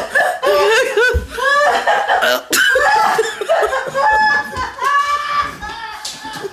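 High-pitched laughter in quick repeated bursts, with a single sharp knock about two and a half seconds in.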